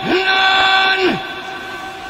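A cartoon voice holding a long 'ahh' cry at an unnaturally steady pitch, sliding up into it and dropping off after about a second.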